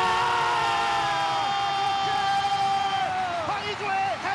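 A television football commentator's long, drawn-out shout celebrating a goal, held for about three and a half seconds with its pitch slowly falling, over the crowd's noise.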